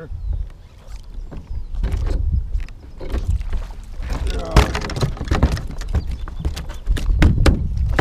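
A hooked bass splashing as it is fought and swung out of the water, then knocks and thumps from handling on a hollow plastic boat deck, over low rumble from wind on the microphone.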